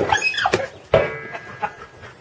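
A dog squeaking and whining in excitement, high-pitched, with a pickup truck door latch clicking open about a second in.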